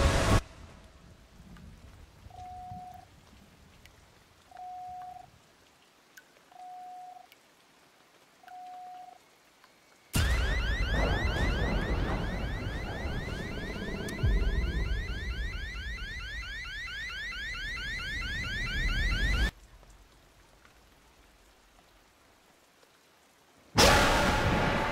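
Four short, single-pitched electronic beeps about two seconds apart over near silence. About ten seconds in, heavy rain comes in suddenly with a fast, repeating rising chirp over it, and it cuts off abruptly after about nine seconds.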